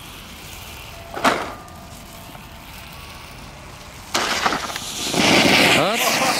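A ground fountain firework catching about four seconds in: a sudden loud hiss of spraying sparks that swells louder a second later and keeps on. A brief sharp sound comes about a second in.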